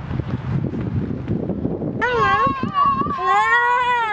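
Low rumble of wind on the microphone for about two seconds, then a young child's high-pitched voice squealing, bending up and down and ending in a long drawn-out note, as he is spun inside a playground spinner wheel.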